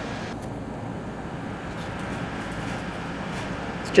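Steady outdoor background noise, an even low haze, with a few faint ticks.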